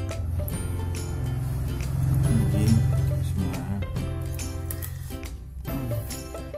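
Background music with a heavy bass line and a steady beat, swelling a little past the middle.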